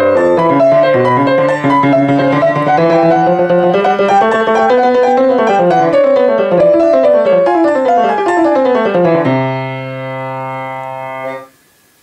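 Grand piano (GP-156 PE) playing a busy contrapuntal passage of several interweaving lines, the lower voices stepping downward. About nine seconds in it settles on a held chord that rings for two seconds and is then damped sharply, leaving a brief pause.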